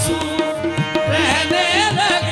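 Qawwali music: tabla keeping a steady rhythm under sustained harmonium tones. A singer's voice comes in about halfway through with a wavering, ornamented line.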